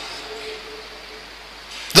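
Room tone of a lecture hall in a pause between spoken phrases: a faint steady background hiss with a faint low tone, and the voice starting again at the very end.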